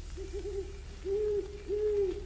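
An owl hooting: a few short, quick hoots, then two longer hoots.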